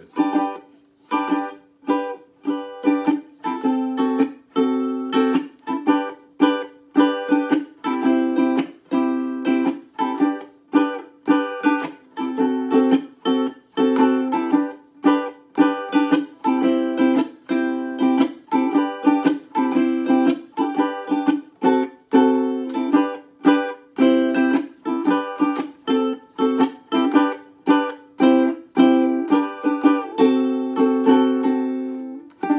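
Córdoba UP-100 concert ukulele strummed in a steady rhythm of chords, about two strums a second, each chord ringing on with good sustain.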